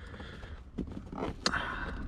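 Faint plastic scraping and small clicks as a factory tweeter cover is pried out of a 1999 Mitsubishi Eclipse Spyder's dashboard, with a sharper click about one and a half seconds in as it comes loose.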